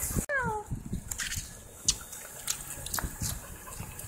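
A pit bull gives one short, falling whine about a third of a second in. Scattered light clicks and knocks follow over a low rumble.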